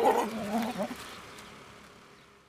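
A Jamnapari buck goat bleating once, a wavering call of about a second at the start, after which the sound fades away.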